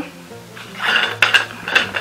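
Lid being unscrewed and lifted off a jar of body cream: a second or so of scraping and clinking from about half a second in.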